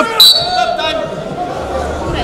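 Wrestling-arena sound: coaches and spectators shouting, with one voice holding a long note in the first second. A sharp slap-like impact comes right at the start, and a short high tone follows just after.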